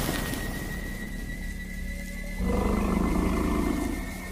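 Dark fantasy film score with a steady drone and low rumble. A little over halfway through, a growling beast-roar sound effect comes in and holds for about a second and a half.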